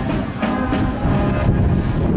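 Youth brass band playing a march while parading, with held brass notes, a few drum strikes, and a heavy low rumble underneath.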